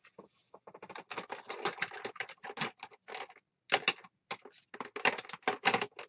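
Paper being handled on a craft table: rapid crackly clicks and rustles as a glued paper die-cut is pressed down and paper cards are moved, in several bursts with short pauses.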